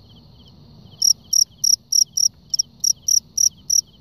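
Male fighting cricket chirping in short, high, evenly repeated pulses, about four a second, starting about a second in. The cricket is stirred up by being prodded with a grass stalk near a rival male.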